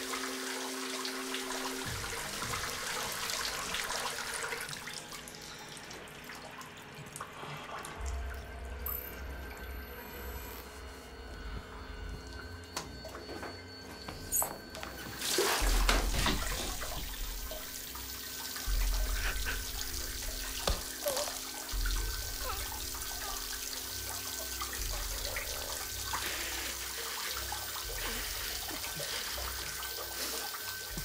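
Running water, louder for a moment a little past halfway through.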